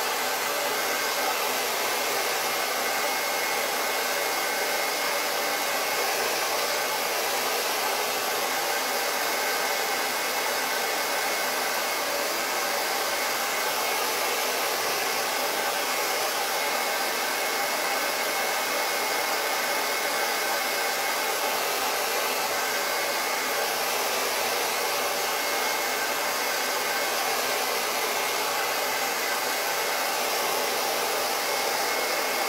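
Handheld hair dryer blowing steadily on a canvas to dry wet acrylic paint, a continuous rushing of air with a faint motor whine.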